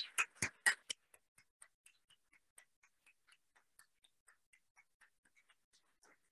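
Applause from a small audience: a few louder hand claps in the first second, then faint, sparse, irregular claps that thin out.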